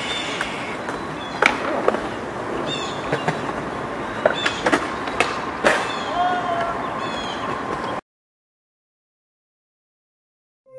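Field recording of a perched hawk: a few short high calls over a steady hiss, with several sharp clicks and knocks. The recording cuts off abruptly about eight seconds in.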